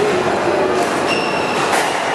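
Court shoes squeaking on a hardwood squash court floor: one high squeal about a second in, lasting under half a second, over a steady loud hall din, with a sharp knock near the end.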